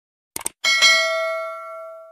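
Two quick mouse-click sound effects, then a bright bell ding that rings out and fades over about a second and a half: the click-and-notification-bell effect of a subscribe-button animation.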